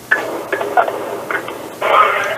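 A man's voice coming over a poor telephone line, narrow-band and broken into garbled fragments, with a louder stretch near the end.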